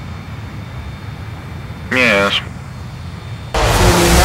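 Jet aircraft engines droning low and steady, then a loud rushing jet fly-past starting near the end. A brief voice sound comes about halfway through.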